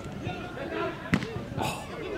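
One sharp impact of a football striking the goalpost, about a second in, amid players' shouts.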